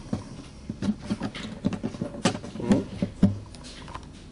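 Irregular small clicks and taps of fingers handling the saddle in the bridge slot of a flamenco guitar.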